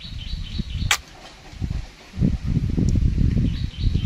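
Low rumbling buffeting on the microphone in two stretches, with one sharp click about a second in. Birds chirp faintly in the background.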